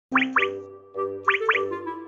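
Bouncy children's-style cartoon background music, with two pairs of quick upward-sweeping 'bloop' sound effects: one pair at the very start and another just past a second in.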